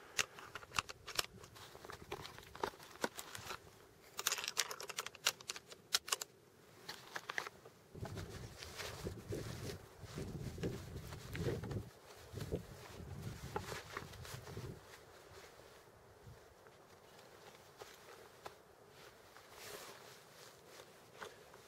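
Handling noise of a rifle, its sling and cold-weather clothing: scattered small clicks and knocks over the first several seconds, then rustling and low rumbling of clothing against the microphone in the middle, easing off near the end.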